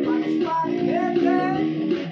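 Electric bass and guitar played together, plucking a repeated riff, with a man's voice singing a gliding melody over it.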